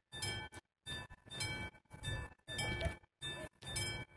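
Level-crossing warning bell ringing in a steady series of metallic strikes, about one every 0.6 seconds, each with the same ringing tone: the crossing is still signalling, with the train just gone by.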